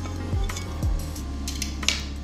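A wire whisk stirring a cream sauce in a glass bowl, with a few sharp metal-on-glass clinks, the loudest near the end. Background music plays under it.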